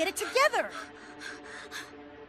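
A young woman's cartoon voice giving quick, yelping gasps that slide up and down in pitch. These give way about two-thirds of a second in to a run of short, breathy gasps, about four a second, fading off near the end.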